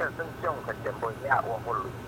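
A person talking quickly over a steady low hum.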